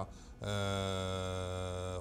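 A man's voice holding one long, flat 'eeh' hesitation sound at a steady low pitch, starting about half a second in and lasting about a second and a half.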